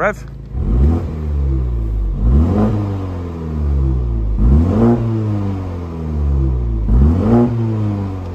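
BMW M135i's turbocharged four-cylinder petrol engine revved from idle four times while the car stands still, each blip rising quickly in pitch and falling back more slowly. It is running in its comfort drive mode, not yet in sport.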